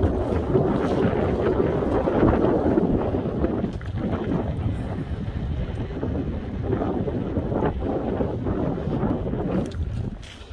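Wind buffeting an open phone microphone: a loud, steady rumble, heaviest in the first four seconds and easing a little after that.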